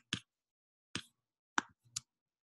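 Computer mouse clicking: four short, sharp clicks, unevenly spaced.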